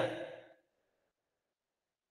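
A man's voice trailing off, fading out within the first half second, then silence.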